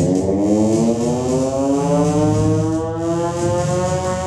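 Electronic feedback drone from a homemade magnetic-switch feedback machine run through effects pedals: a buzzy, horn-like tone with many overtones, slowly rising in pitch, over a low hum that swells and fades.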